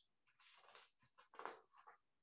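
Near silence: room tone with a few faint, short, soft noises.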